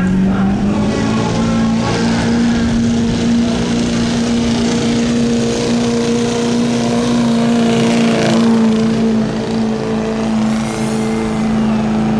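Diesel pickup truck engine held at high revs under heavy load while dragging a truck-pulling sled. Its pitch climbs about a second in, then holds steady.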